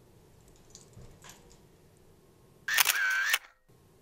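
Camera shutter sound, loud and under a second long, near the end, marking a snapshot taken for a thumbnail. A few faint handling noises come before it.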